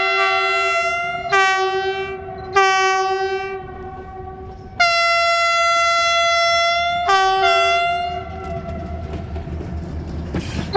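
A CFR Class 64 (EGM) diesel locomotive sounds its horn in about five back-to-back blasts of a multi-note chord, the longest held for about two seconds in the middle. After the last blast fades, the low rumble of the approaching train grows.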